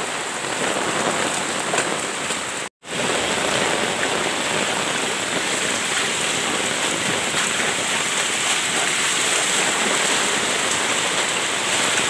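Heavy rain falling steadily, mixed with the rush of muddy floodwater pouring along a lane. The sound cuts out for an instant about three seconds in.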